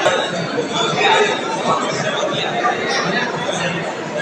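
Chatter of several people talking at once, overlapping voices with no single clear speaker standing out.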